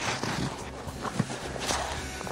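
Packed snow crunching and crumbling as it is dug through at the moment a snow tunnel breaks through, a rough irregular crackle that starts suddenly.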